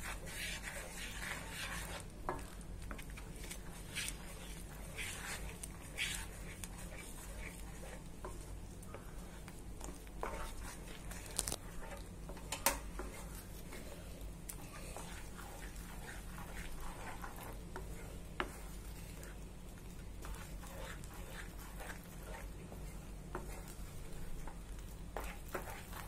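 Wooden spatula stirring and scraping thickening semolina sheera in a non-stick pan as it cooks down in ghee, in soft irregular strokes and a few sharper clicks over a steady low hum.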